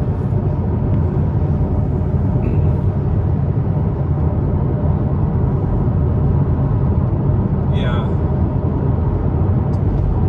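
Steady low road and engine rumble of a moving car, heard inside the cabin.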